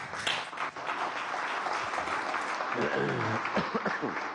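A roomful of people applauding, breaking in suddenly and going on steadily, with a voice heard over the clapping in the second half.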